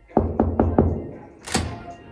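Knuckles knocking four times in quick succession on a wooden hotel room door, followed by a single sharper click about a second and a half in.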